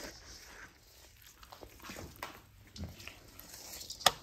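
Spatula stirring a thick, wet mix of sour cream, cheese soup and shredded cheese in a stainless steel mixing bowl: faint, irregular soft squishes and scrapes.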